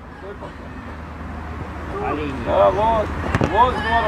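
Shouts and calls from players on an outdoor football pitch, growing louder about two seconds in, over a steady low hum, with a couple of sharp knocks near the end.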